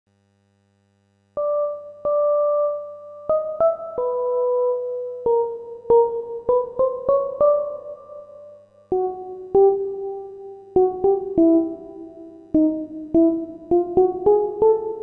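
A slow keyboard melody in a piano-like tone, starting just over a second in after silence, with single notes played one after another, each struck and left to fade.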